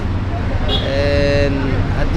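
A vehicle horn sounds once, a steady tone lasting about a second, starting a little under a second in, over the constant rumble of street traffic.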